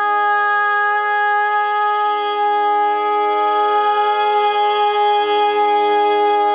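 A female Carnatic vocalist and a violin hold one long, steady note together over a tanpura drone, with no percussion.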